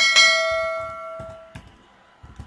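A single bell-chime sound effect, the notification-bell ding of a subscribe-button animation. It strikes sharply and rings out, fading over about a second and a half.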